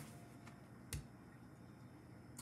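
Near silence with a single short click about halfway through, from a tarot card being handled.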